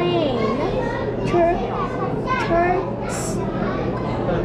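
Children's voices talking and calling out, with other voices chattering behind them.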